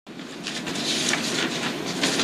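Sheets of paper rustling as they are handled close to a microphone, a crackly noise that swells in over the first second after a brief dropout in the audio.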